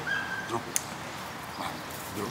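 A hunting dog whining faintly a couple of times, with a short sharp click just under a second in.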